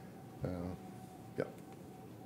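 A man's voice with two brief filler words, 'uh' and then a clipped 'yeah', over quiet room tone with a faint steady hum.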